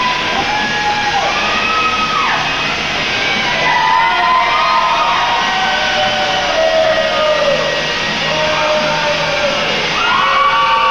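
Music with long, sliding vocal lines, played loud and steady in a large hall.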